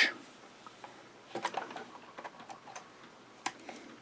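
Small flush cutters snipping a felt oil wick flush with a sewing machine's oil port: a few faint, short clicks and ticks, most of them from about a second and a half in until near the end.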